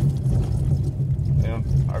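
Small car driving on a hard, unpaved dirt road, heard from inside the cabin: a steady low rumble of engine and tyres. A man starts talking near the end.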